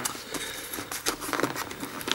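Cardboard-and-plastic blister box being handled and its top flap pried open: faint, irregular small clicks and crackles of card and plastic.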